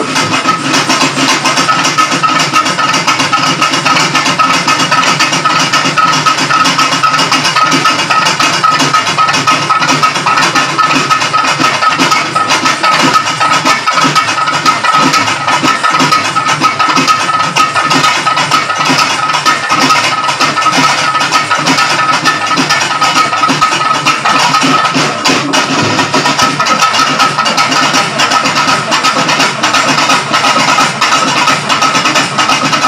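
A live folk ensemble of hand drums played loud and dense, with a steady high note held throughout, accompanying a stage dance.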